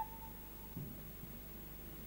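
A held plastic-recorder note fades out at the very start, followed by a quiet pause. Just under a second in there is a faint, brief low sound.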